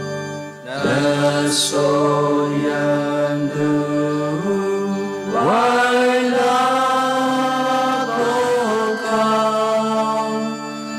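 Slow devotional chant-like singing in long held notes over a sustained low accompaniment, with sliding new phrases entering about a second in and again about five seconds in.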